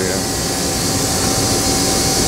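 Steady mechanical hum and hiss of running machinery, with a faint constant tone and no breaks.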